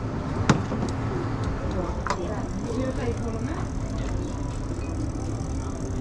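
Kitchen ambience: a steady low hum with background chatter, and a sharp metallic clink from a pan or tongs about half a second in.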